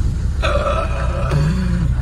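A man's drawn-out laugh, held for about a second starting half a second in, over the low steady running of the Mercedes's engine heard inside the cabin.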